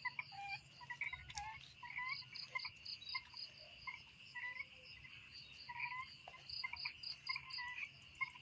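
Frogs calling: many short, faint calls scattered through the whole stretch, some bending briefly in pitch, over a steady high-pitched hum.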